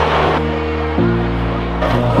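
Background music with steady held bass notes that change to new notes about a second in.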